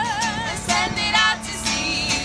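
Indie-folk duo singing to a strummed archtop guitar. A long sung note with vibrato ends about half a second in, then shorter sung phrases follow.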